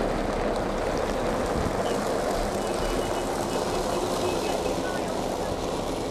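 Heavy diesel dump trucks running at a construction site: a steady engine drone with low throb and broad road and dust noise, keeping an even level throughout.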